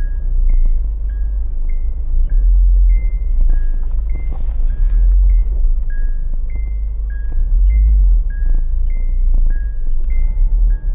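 Steady low rumble of a car moving slowly, with a repeating two-note electronic tone, a higher note then a lower one, about once a second.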